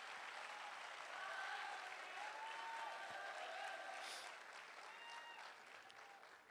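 Audience applauding, faint, with a few voices under it, dying away near the end.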